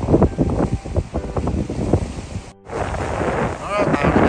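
Wind buffeting the microphone in irregular gusts, with a brief dropout a little over halfway through.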